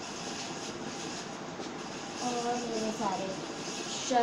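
A steady rushing background noise, with a woman's voice making a short utterance about two seconds in.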